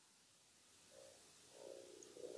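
Near silence: a pause in speech, with only faint room tone.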